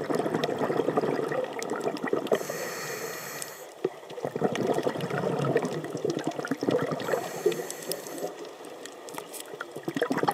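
Scuba diver breathing through a regulator underwater: two hissing inhalations, about two and a half and seven seconds in, each followed by a long rush of exhaled bubbles.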